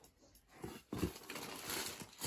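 Packaging crinkling and rustling as hands rummage in a cardboard box, starting suddenly about a second in after a short quiet spell.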